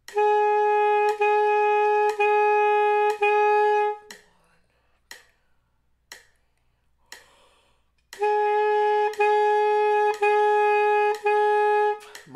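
Alto saxophone playing a tonguing exercise: four separate notes on one steady pitch, each about a second long and started with the tongue on the reed, in time with a metronome clicking once a second. Then four clicks of rest with no playing, then four more tongued notes.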